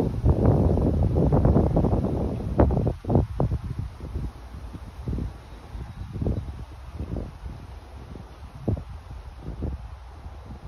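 Wind buffeting the microphone, loud and rumbling for the first three seconds, then easing to weaker, intermittent gusts.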